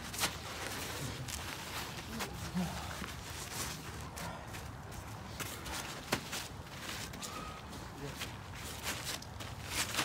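Footsteps and scuffing on a plastic tarp laid over grass, with a few sharp knocks scattered through.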